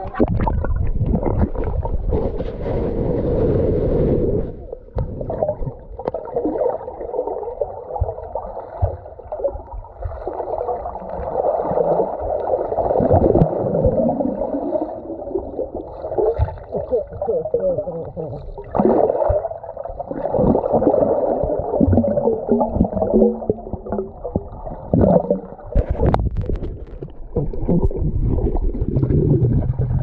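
Muffled underwater sound of water churning and bubbling as a swimmer moves and blows bubbles, heard through an action camera's waterproof housing. A sharp knock near the end.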